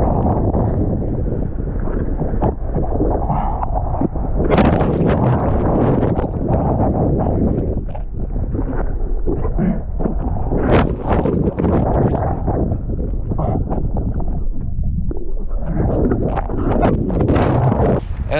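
Wind buffeting the microphone of a body-mounted action camera while a kiteboard rides fast over choppy water, with spray and chop giving frequent sharp knocks and crackles.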